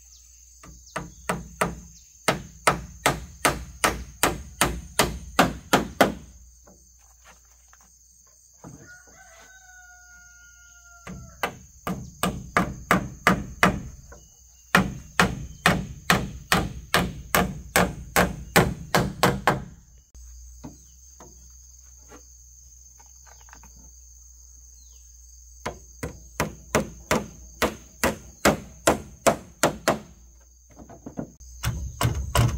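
Claw hammer driving nails into wooden boards, in runs of quick blows about three a second, with pauses between. About nine seconds in, during a pause, a rooster crows once, and insects buzz steadily in the background.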